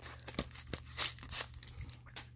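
Plastic sleeve of a Pokémon booster pack being torn open by hand, with crinkling of the foil pack: a run of short tearing crackles, loudest about a second in.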